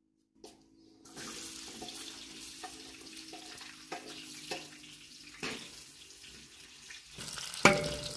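Chopped red onion hitting hot oil in a steel wok and sizzling steadily from about a second in. A wooden board knocks against the wok several times, with the loudest knock near the end.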